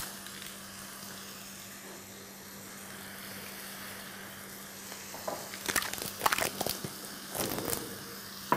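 Minced meat, onion and carrots frying in a pan with a steady sizzle. From about five and a half seconds in, a wooden spatula stirs them, scraping and knocking against the pan in short strokes.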